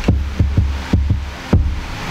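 A series of dull low thumps, roughly every half second, over a deep hum.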